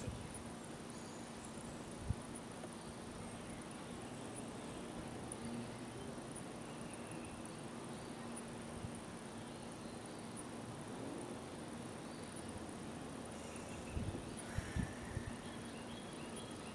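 Faint woodland ambience with a steady high-pitched insect trill. A single sharp click about two seconds in and a few soft knocks near the end.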